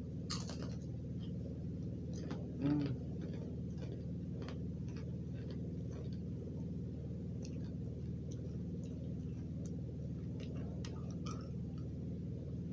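Crunchy chocolate-drizzled pretzel crisp being chewed with the mouth closed: a string of small, irregular crunching clicks over a steady low hum.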